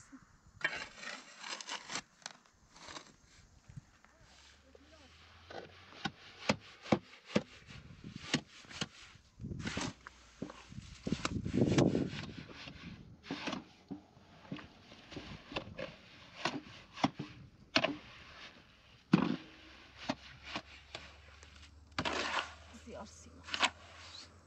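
Shovel mixing wet cement mortar in a steel wheelbarrow. The blade scrapes and knocks against the tray at an irregular pace, with the wet mix slapping and grinding.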